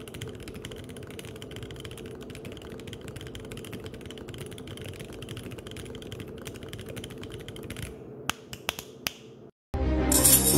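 Fast typing on a split mechanical keyboard, a dense continuous clatter of key clicks. About eight seconds in it thins to a few separate key presses and stops. Just before the end, loud music cuts in.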